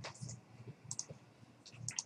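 A few light clicks of a computer mouse, spaced out: one near the start, one about a second in and a couple near the end, over a faint low hum.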